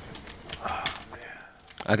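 A few sharp clicks of poker chips handled at the table, with soft murmured voices under them.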